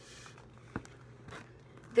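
Faint handling noise as a paper notebook is picked up and turned, with a single light tap a little under a second in.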